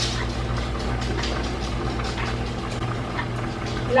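A pot bubbling steadily on the stove, with faint ticks over a low steady hum.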